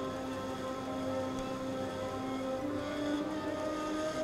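Soft background score of sustained, held notes that shift to a new chord about two and a half seconds in.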